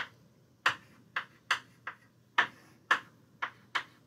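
Chalk tapping on a blackboard as short marks are drawn: about eight sharp taps at uneven intervals.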